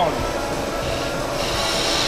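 Wood lathe running with a steady hum while a turning tool cuts into the spinning wooden spindle; a hiss of cutting comes in about one and a half seconds in.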